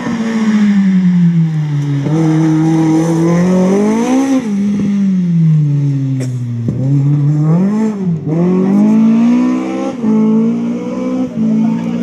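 BMW E30 rally car's engine revving hard under acceleration, its pitch climbing through each gear and dropping sharply at shifts and lifts, about two seconds in and again near seven seconds.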